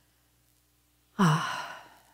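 A woman's long audible sigh: a breathy, voiced exhale that starts suddenly about a second in, its pitch falling as it trails off. It is a deliberate deep breath, taken to settle into prayer.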